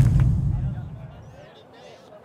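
Deep boom of an editing transition sound effect, fading away over about a second and a half.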